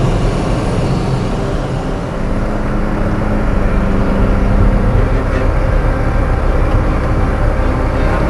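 Car driving along a country road, heard from inside the cabin: a steady low engine and tyre rumble. About two seconds in, the engine hum grows a little louder for a few seconds.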